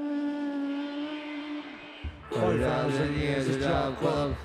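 Live rock band on stage. A single held note fades over the first two seconds, then the full band comes in loudly with a steady drum beat, bass and guitar.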